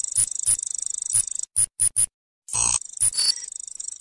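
Electronic transition sound effect: a high, steady synthetic whine stuttering with irregular clicks, breaking into three short glitchy blips and a brief silence about halfway, then a louder burst and the whine again.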